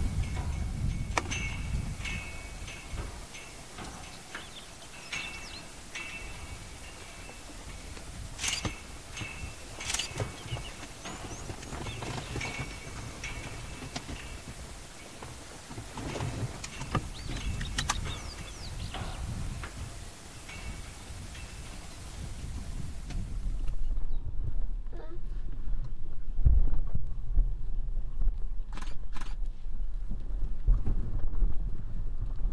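Outdoor ambience with repeated short high bird chirps and scattered soft clicks over a faint hiss. About 24 seconds in it changes to a louder low wind rumble on the microphone.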